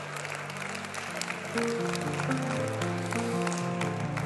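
Soft sustained keyboard chords held under the room, changing slowly from one chord to the next, with a short laugh about two seconds in.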